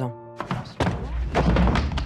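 Dramatic sound-design hit: the music cuts out and a heavy thud lands about half a second in, followed by a dense, low rumbling noise.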